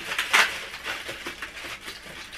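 Cardboard advent calendars being handled and their doors pulled open: a quick, irregular run of short papery rustles and clicks, loudest about a third of a second in.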